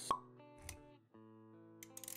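Intro music with sustained notes, overlaid with animation sound effects: a short sharp blip just after the start and a low thud a little past half a second in. The music drops out briefly around a second in, then comes back.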